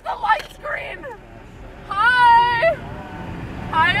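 A young woman's voice: a few short spoken fragments, then a loud, high-pitched, drawn-out vocal cry about two seconds in, with another starting just before the end. A low steady rumble sits underneath.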